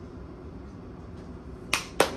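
Low, steady hum of a quiet room with no music playing, then a single sharp click near the end.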